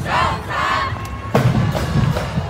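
A loud, high-pitched cheering shout from the parade crowd over a marching band's drums beating underneath. The shout wavers for about a second and then fades.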